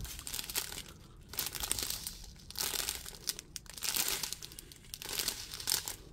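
Clear plastic bags of diamond-painting drills crinkling as they are handled, in about half a dozen irregular bursts.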